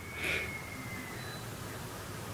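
Quiet room tone with one short, soft breath through the nose just after the start.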